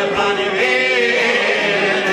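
Albanian folk song: male voices singing together on a long held, wavering note, over çifteli and sharki long-necked lutes and a fiddle.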